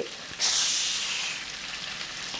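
Sudden loud hiss of steam about half a second in, fading gradually: burnt, pan-hot burger food plunged into water.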